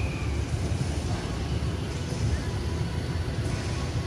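Outdoor street ambience: a steady low rumble like traffic, with faint voices mixed in.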